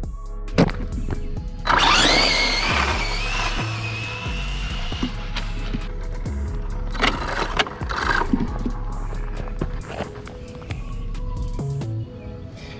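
Background music with a steady beat, over which, about two seconds in, the brushless electric motor of a Losi 22S no-prep RC drag car whines up sharply in pitch as the car launches down the street, the whine levelling off and fading over the next few seconds.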